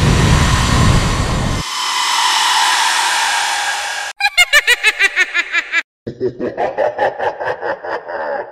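Intro sound effects: a loud whoosh of hiss with a deep rumble under it for the first second and a half, the hiss fading over the next few seconds. Then come two runs of rapid pitched pulses, about six a second, laugh-like, broken by a brief gap.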